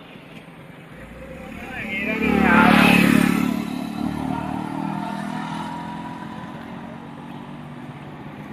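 A motor vehicle passing on the road: its engine grows louder from about a second in, is loudest around three seconds in, then fades away slowly.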